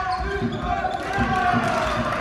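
A basketball being dribbled on a sports hall floor, a quick run of bounces several times a second, with players' voices and shoe noise on court.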